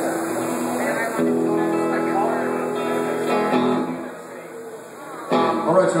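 Electric guitar being tuned: a chord is struck about a second in and its notes ring steadily for a couple of seconds, then die away.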